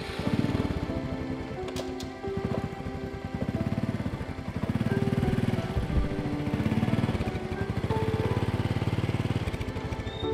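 Small step-through motorcycle engine catching and running with a fast, even putter, getting louder about halfway through as the bike pulls away, then cutting off near the end. Soft background music plays over it.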